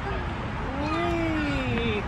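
A drawn-out vocal sound, rising and then falling in pitch over about a second, with a brief shorter call just before it.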